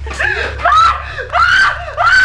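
A woman screaming in frantic high-pitched cries, about four in two seconds, over a steady low hum.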